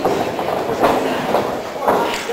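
Wrestlers' hits and bodies landing in the ring: a run of about four sharp thuds and slaps in two seconds, over the voices of the crowd.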